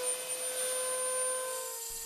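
Router table running a small burr at high speed: a steady high whine with a faint hiss, as it works a small brass block.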